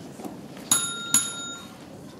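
Two bright strikes of a small bell, about half a second apart, each ringing briefly in a few clear high tones before fading.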